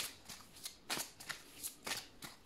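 A deck of oracle cards being shuffled by hand: a string of soft, irregular flicks and slaps, about six in two seconds.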